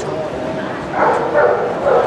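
A dog barking three times in quick succession, over the steady chatter of a crowd in a large hall.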